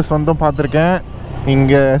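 A man talking, with a short pause about halfway through, over a steady low rumble of slow motorcycle and street traffic.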